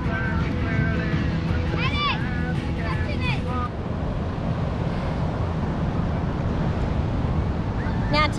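Wind buffeting the microphone over the wash of surf on an ocean beach, a steady low rumble. Faint voices call out in the first few seconds.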